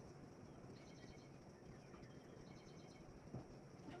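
Near silence with faint birdsong: two short trilling chirp runs, about a second in and again past two seconds, over a faint steady high hum.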